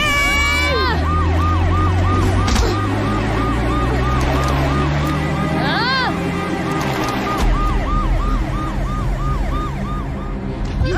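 A siren-like warbling tone that rises and falls about three times a second, over a low steady music drone. A loud gliding sweep opens it and another rises and falls about six seconds in.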